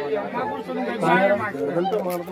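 Several men shouting and calling out over each other in alarm.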